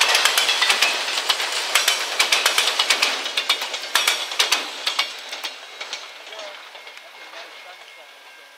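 Freight train's autorack cars rolling past, the wheels clicking rapidly over the rail joints with a hiss of steel wheels on rail. The clicks thin out and stop about five seconds in as the last car goes by, and the noise fades away.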